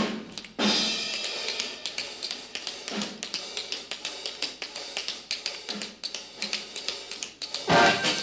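Swing-style band music driven by a drum kit with cymbals and sharp drum strokes, accompanying a dance routine. It briefly drops out about half a second in and ends with a loud band hit.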